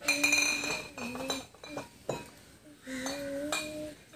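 A voice humming a few held notes that slide a little in pitch, in short spells with gaps between, with a bright ringing clink at the start and a sharp click about two seconds in.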